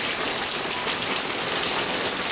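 Steady rain falling, an even hiss of many drops.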